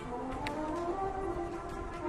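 Drum corps brass line playing a soft ballad passage: quiet sustained chords whose inner notes shift slowly in pitch.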